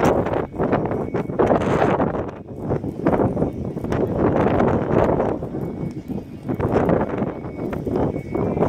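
Wind buffeting the microphone: a loud, gusty rushing that rises and falls.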